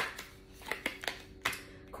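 Tarot cards being handled: a few sharp snaps and flicks as cards are pulled from the deck and laid down on the table, the loudest at the start and about a second and a half in.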